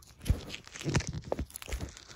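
Crinkling and rustling of a plastic label sleeve and the scarf's silk-wool fabric being handled, in a few uneven bursts, the sharpest about a quarter second in.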